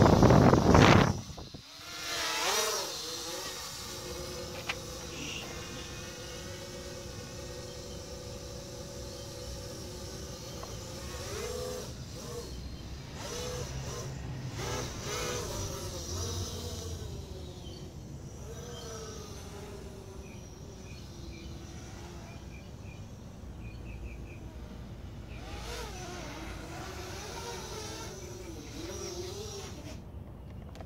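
A loud rushing burst in the first second and a half, then the steady whine of a 200 QX quadcopter's motors in flight. Its pitch rises and falls with throttle changes a few times.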